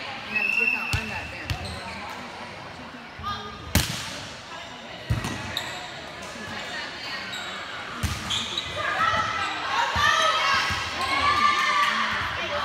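A volleyball being struck during a rally in a gym: a series of sharp smacks of hands and arms on the ball, the loudest about four seconds in, each echoing in the hall. Several players' voices call out over one another in the last few seconds.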